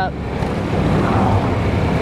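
Honda Forza 300 scooter's single-cylinder engine running while under way, mixed with a steady rush of wind and road noise on the rider's body-worn mic.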